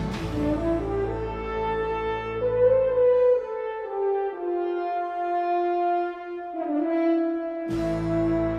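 Series theme music: a slow horn melody of long held notes stepping upward over a low bass. The bass drops out about halfway through and comes back with a sudden hit near the end.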